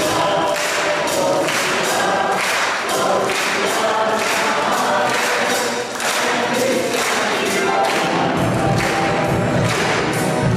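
A church congregation and choir singing a hymn together, led by a cantor, over an accompaniment that keeps a steady beat.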